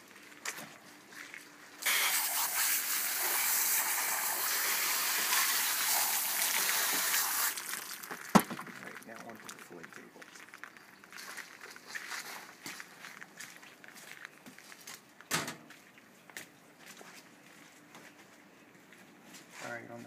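Hose spray nozzle rinsing a freshly gutted sockeye salmon: a steady hissing spray that starts about two seconds in and stops after about five and a half seconds. A single sharp knock follows, then light clatter of handling.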